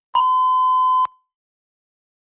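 Electronic timer beep: one steady tone held for about a second that cuts off sharply, signalling that the speaking-time countdown has reached zero.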